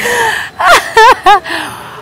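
A woman gasps, then laughs in three short high-pitched bursts, mocking a request to give money back.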